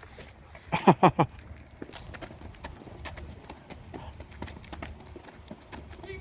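A person's voice: four quick, loud, falling squeals about a second in. After them come faint scattered clicks over a steady low hum.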